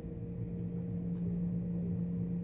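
Steady low hum of room equipment, holding two unchanging tones, with no other clear event.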